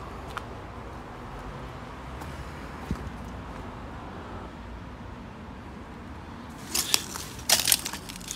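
Crunching and crackling of broken glass and debris underfoot: a quick cluster of sharp crunches near the end, over steady low background noise with a couple of faint clicks earlier.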